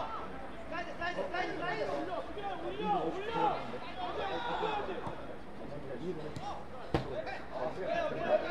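Several players' voices shouting and calling to each other across the football pitch during play, overlapping one another, with a single sharp knock about seven seconds in.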